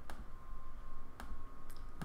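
Computer mouse clicking: a few sharp, separate clicks, the clearest at the start and about a second later.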